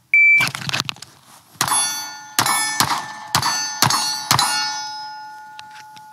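A shot timer beeps once, then a handgun fires six quick shots over about three seconds, each hit setting a steel target ringing; the metallic ring fades out slowly after the last shot.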